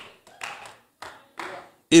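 A few short, scattered hand claps and brief murmured responses from a church congregation, four quiet bursts spread across about two seconds.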